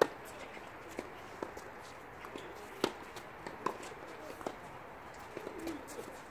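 Tennis balls being struck by rackets and bouncing on a hard court during a doubles rally: a run of sharp pops about every half second to a second. The loudest hits come at the very start and just before three seconds in.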